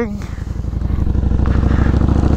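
Harley-Davidson V-Rod's V-twin engine running while the bike rides along, its low, even pulsing growing louder about half a second in.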